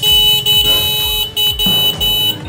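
A loud electronic alarm tone at a steady high pitch, sounding in about three long pulses with short breaks between them.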